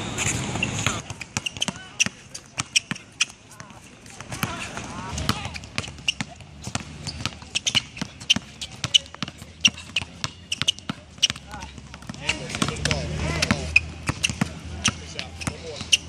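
A basketball dribbled fast and hard on a hard court: a long, uneven run of sharp bounces, several a second.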